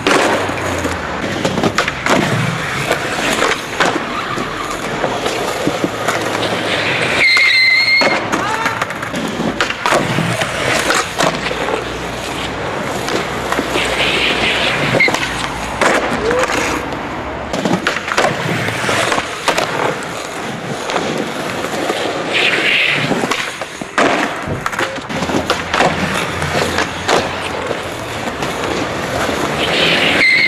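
Skateboard wheels rolling over rough street pavement, with repeated sharp clacks of boards being popped and landing on the concrete.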